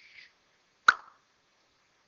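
A single short, sharp click about a second in.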